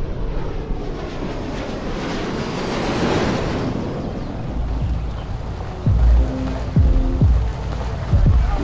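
A jet plane passing overhead, its noise swelling to a peak about three seconds in and then fading. About six seconds in, a hip-hop beat starts, with deep bass notes that slide down in pitch.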